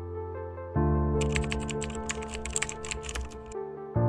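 A quick run of computer keyboard typing clicks over background music, starting about a second in and stopping shortly before the end.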